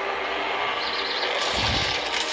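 Cartoon sound effects from a TV speaker: a steady rushing, wind-like noise that grows louder about a second in, with a deep rumble near the end.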